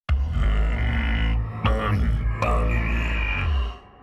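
A very deep, guttural, electronically lowered voice speaking a line in an invented alien language, in three phrases: a long one, then two more starting about a second and a half and two and a half seconds in, fading out just before the end.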